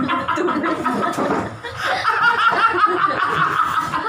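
People laughing together, a man's laugh among them. The laughter drops off briefly about a second and a half in, then picks up again.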